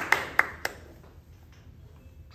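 Audience applause dying away, with a few last sharp single claps; it stops less than a second in, leaving a quiet room.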